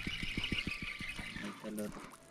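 Spinning reel being cranked to wind in a lure, giving a fast even ticking of about eight ticks a second that stops after a second and a half. A short voice sound comes near the end.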